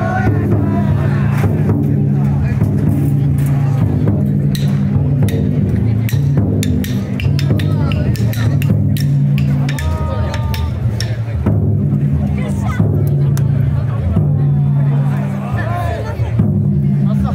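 Large taiko drum inside a Banshu festival float being struck again and again, under the shouts and chanting of the crowd of bearers.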